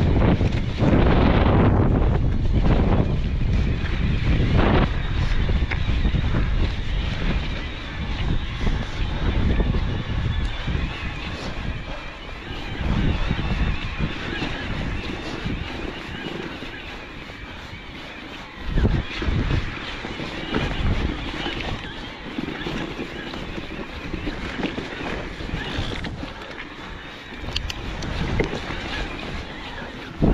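Wind buffeting the microphone, over the tyre roll and rattle of an electric mountain bike riding a rocky trail, with a few louder knocks as it goes over stones.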